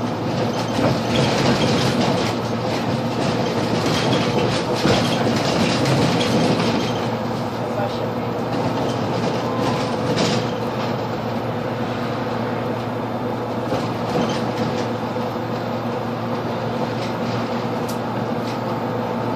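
Cabin noise of a Solaris Urbino 18 III Hybrid articulated city bus on the move: a steady drivetrain hum under road noise, a little louder over the first several seconds, with a few brief knocks and rattles.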